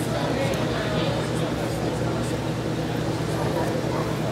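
Indistinct voices from onlookers over a steady low hum.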